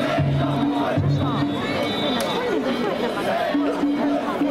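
Danjiri festival music, a held pitched line in short phrases with a few sharp strikes, over the voices of a large crowd of haulers calling and shouting around the lantern-lit float.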